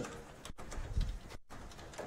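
A felt eraser wiping a chalkboard, faintly, with a brief low murmur about halfway through.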